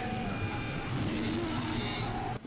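Low, steady horror-film score playing quietly under the reaction, with no one speaking.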